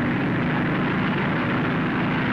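Racing speedboat's engine running flat out: one loud, steady drone that holds its pitch.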